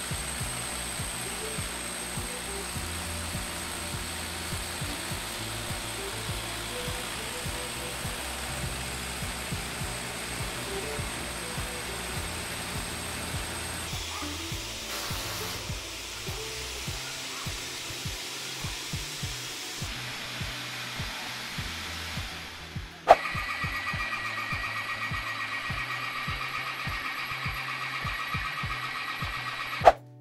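Background music over steady power-tool noise. About two-thirds of the way in, a sharp click is followed by a steady high whine: a rotary hammer drill drilling up into a concrete ceiling.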